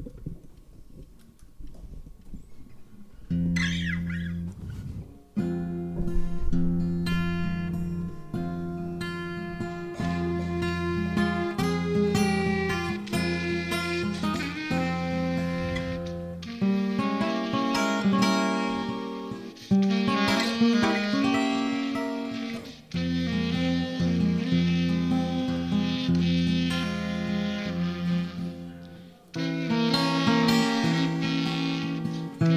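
Acoustic guitar and clarinet playing an instrumental introduction, starting about three seconds in after a few near-quiet seconds, with a few short breaks between phrases.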